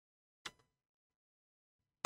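A single sharp computer-mouse click about half a second in, then near silence.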